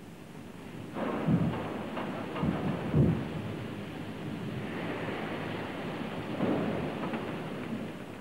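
Steel plate mill working: a steady rushing hiss with heavy low rumbles and thuds, the loudest about three seconds in, as a red-hot slab runs on the roller table at the four-high rolling stand.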